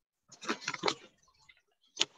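Origami paper crinkling and rustling as it is pressed and folded by hand: a short run of crackles starting about a third of a second in and lasting under a second.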